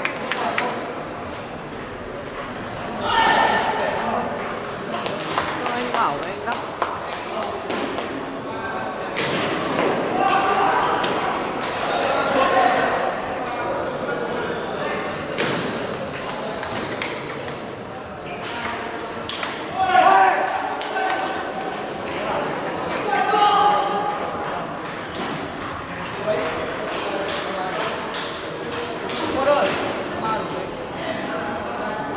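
Table tennis ball clicking against paddles and the table in quick runs of rallies, with more ball clicks from other tables nearby. People's voices talk in the background.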